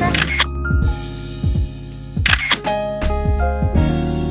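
Background music with a camera shutter click about two seconds in, and a couple of fainter clicks near the start.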